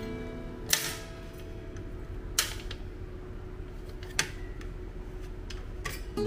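Three sharp clicks, spaced about a second and a half to two seconds apart, as the hinged stainless wire cutting frame of a plastic luncheon meat slicer is swung and knocks against its plastic base. Soft background music runs underneath.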